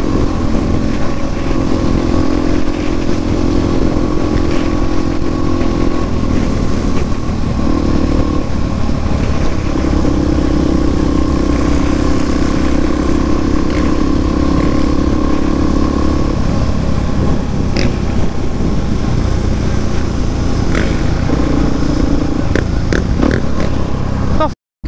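Supermoto motorcycle engine running at highway cruising speed, heard from the bike with wind rush on the microphone. The engine note holds steady for long stretches, with a few short breaks as the throttle eases.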